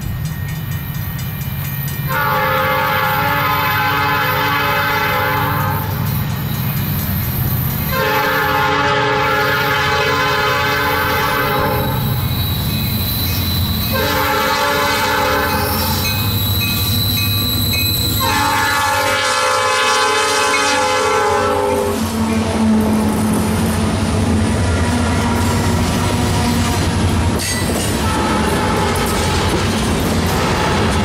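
Diesel freight locomotive's multi-note air horn sounding four long blasts over the low rumble of the approaching engines. The locomotives then pass close by, and a string of steel ore hopper cars rolls past with rhythmic wheel clatter.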